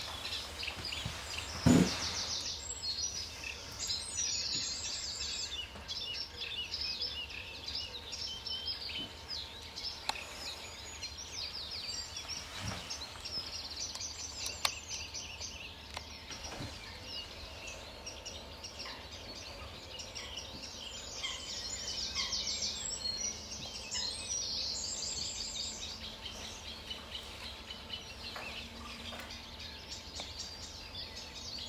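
Several songbirds singing over one another, with bursts of quick repeated high notes and trills coming and going, over a steady low rumble. A single sharp thump about two seconds in is the loudest sound.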